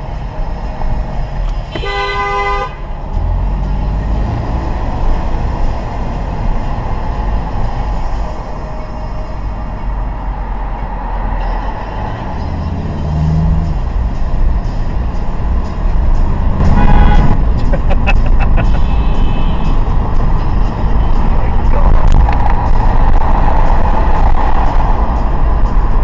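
Car horn honking: one short blast with a clear pitched tone near the start, and another burst about two-thirds of the way through. Underneath, steady road and engine noise is heard from inside a car's cabin, and it grows louder in the later part.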